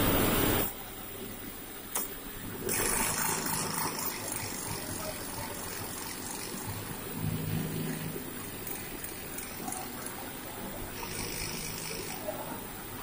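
Textile yarn doubling machine running, its winding drum turning a yarn package with a steady mechanical hum. A loud burst of hiss comes at the very start, and another about three seconds in.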